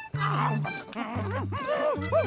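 Cartoon monkeys hooting and chattering, a run of quick rising-and-falling "ooh-ah" calls starting about halfway through, over background music with a bouncy bass line.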